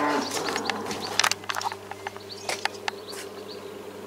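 A steady low buzzing hum with a few light clicks and taps.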